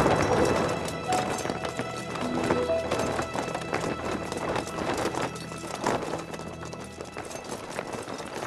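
The tail of an explosion fading out, then many quick footfalls of soldiers running in a charge, over a dramatic film score with a low steady drone.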